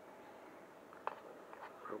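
Handling of a DJI Osmo Pocket and its plastic charging case: one sharp click about halfway through, then a couple of fainter clicks, over a faint steady hiss.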